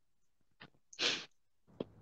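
A single short, sharp burst of breath noise from a person, about a second in, with faint clicks shortly before and after.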